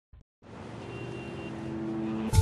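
A TV soundtrack fading in: a steady low rumble with a few held tones, rising gradually in level.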